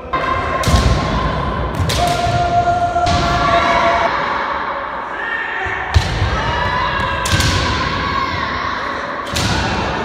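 Kendo sparring: drawn-out kiai shouts, and about five sharp impacts of stamping footwork and bamboo shinai strikes, with reverberation from a large hall.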